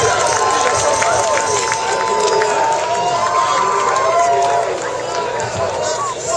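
Concert crowd chatter: many voices talking and calling out over one another, with no music playing.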